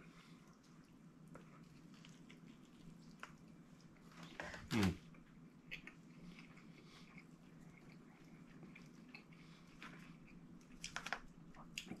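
Faint chewing and wet mouth sounds of a man eating a soggy, consommé-dipped birria taco, with a short hummed "hmm" about five seconds in and a few small clicks near the end.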